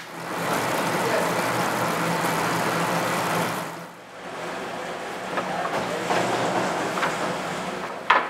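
Bakery dough mixer running, a steady machine hum with churning noise, which stops at a cut about four seconds in. A fainter, noisier background with a few light knocks follows.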